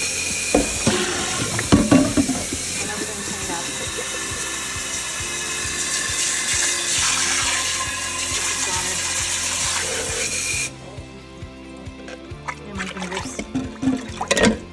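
Kitchen faucet running hard into an enameled cast iron skillet full of water in a stainless steel sink, shut off abruptly about ten and a half seconds in. After that, near the end, water splashes as a hand swishes it around in the pan.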